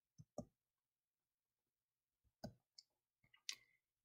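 Near silence with a few faint, short clicks: two close together near the start, one about two and a half seconds in, and one more just before the end.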